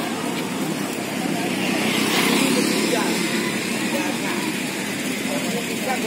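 Outdoor street ambience: indistinct background chatter over steady road-traffic noise, with a vehicle passing and the sound swelling louder about two seconds in.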